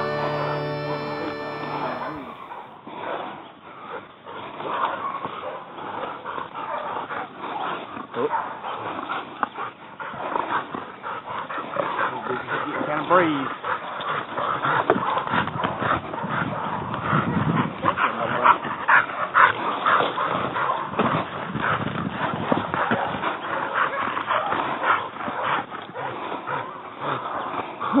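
A music track ends in the first couple of seconds. After that, Catahoula cur hog dogs bark and yip in a dense, uneven stretch with brush crashing and rustling, growing louder about halfway through.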